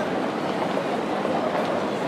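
Steady, dense outdoor city noise: an even hubbub with no single clear event.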